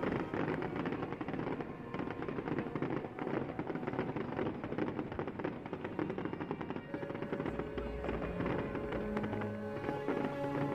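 Fireworks crackling: a dense, rapid run of small sharp reports from glittering bursts. Music plays alongside and becomes clearer in the last few seconds.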